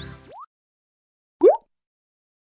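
Motion-graphics sound effects: a rising sweep that cuts off about half a second in, then, after a gap of silence, a single short upward-gliding pop about a second and a half in.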